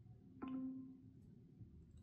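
An iPhone's Classic Voice Control activation chime: a single short tone about half a second in that fades away within a second. It marks the phone starting to listen for a spoken command after the side button is held.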